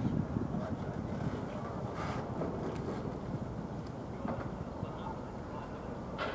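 Steady low outdoor rumble with wind buffeting the microphone.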